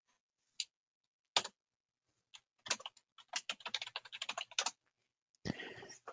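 Computer keyboard keys being pressed: a few single keystrokes, the loudest about a second and a half in, then a quick run of typing lasting about two seconds.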